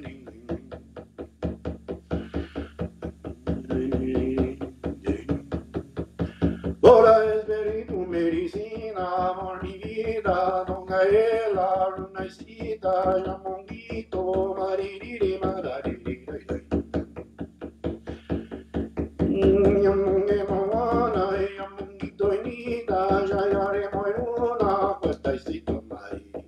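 A hand drum beaten in a steady, even beat. Over it a voice chants wordless sung phrases, entering softly at first and strongly from about seven seconds in, with a pause in the singing in the middle.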